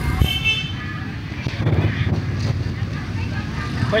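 Busy produce-market background: a steady low rumble of surrounding noise, with a brief voice in the distance just after the start.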